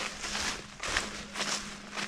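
Footsteps through dry leaf litter on a forest floor, a few irregular steps rustling and crunching.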